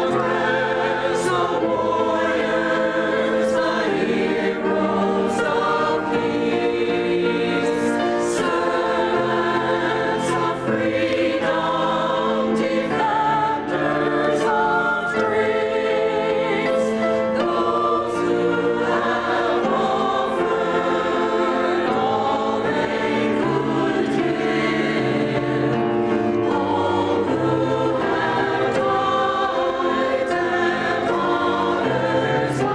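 Mixed church choir of men's and women's voices singing with grand piano accompaniment, continuous and steady throughout.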